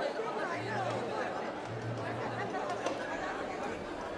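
Crowd chatter: many overlapping voices of guests talking at once in a large hall.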